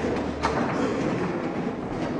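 A sharp tap about half a second in and a few fainter taps from fast play at a chessboard, over steady room noise.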